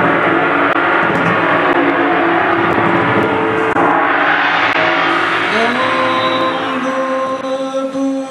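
A large suspended gong struck with a mallet, its shimmering wash of many overtones swelling and ringing on. About two-thirds of the way in, a voice enters with a rising glide into a long held note over the gong.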